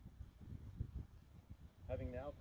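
Faint, uneven low rumble of wind on the microphone; a voice begins just before the end.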